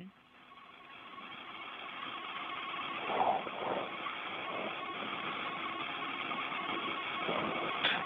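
Hiss of an open air-to-ground radio channel between crew range calls, rising from very faint to steady over the first two seconds, with a faint steady tone and a brief muffled sound about three seconds in.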